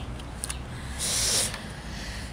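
A short breathy hiss lasting about half a second, starting about a second in: a person's breath taken close to the microphone, over a low rumble.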